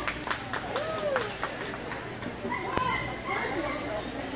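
Indistinct talk and chatter of people in a large hall, with a few sharp clicks in the first second or so.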